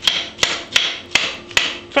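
A utensil knocking repeatedly against a steel pot while tossing broccoli, about two or three knocks a second, each with a short rustling tail.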